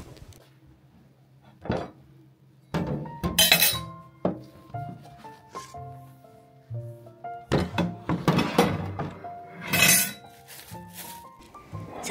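Glassware, a knife and dishes clinking and clattering into a stainless steel sink several times while the worktop is cleared, over light background music.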